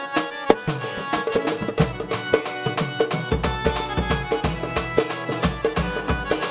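A live Bengali folk band playing an instrumental passage: a quick, steady percussion beat under a sustained melody on electronic keyboard. Deep bass beats join about halfway through.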